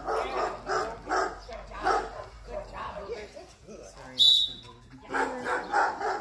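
A dog barking repeatedly, about two barks a second, with a short high squeal about four seconds in.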